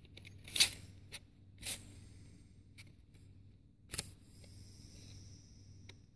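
A few sharp light clicks and scrapes of the plastic and metal parts of an opened DVD drive being handled, spaced irregularly, with a short rustle about four seconds in.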